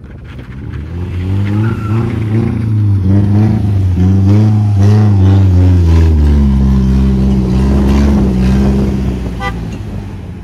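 Car engine revving under load while a stuck SUV is towed out of soft sand; its pitch rises and falls, then holds steadier and lower from about six seconds in, fading toward the end.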